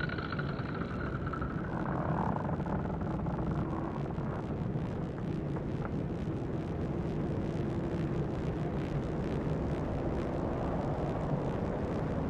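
A steady, low ambient drone: an even noisy hum with a few faint held tones.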